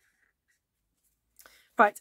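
Near silence with a few faint strokes of a marker pen colouring on card in the first half second, then a woman says "right" near the end.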